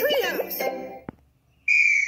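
The end of a children's TV promo jingle, singing over music, fades out. Then, about a second and a half in, a single shrill whistle blast starts and holds one steady note: a marching-band whistle.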